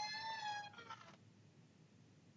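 A single high-pitched held tone with overtones, dropping slightly in pitch as it begins and ending under a second in, followed by faint steady hiss.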